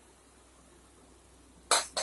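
Quiet room background, then near the end one short, sharp clink from the opened pressure cooker being handled.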